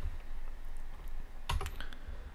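A quick pair of sharp computer clicks about one and a half seconds in, confirming the Unsharp Mask dialog, over a low steady hum.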